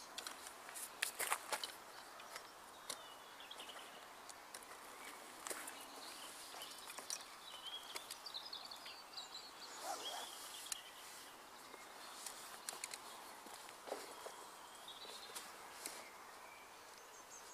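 Tent-pole sections clicking and knocking as the hoops of a canvas swag tent are fitted together and handled, with some rustling of the canvas. Birds chirp intermittently in the background.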